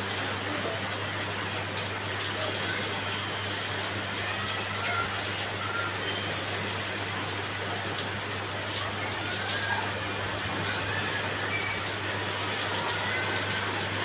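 Electric hair clippers buzzing steadily while cutting short hair.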